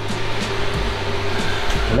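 Background music with a steady rushing noise underneath.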